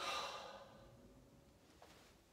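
A man's sigh: a sudden breathy exhale that fades over about a second, with the last notes of the acoustic guitar dying away underneath.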